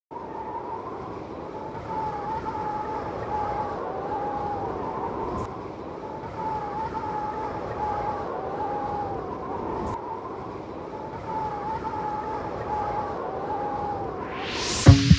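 Drone motors and propellers whining at a steady, slightly wavering pitch over an even rushing noise.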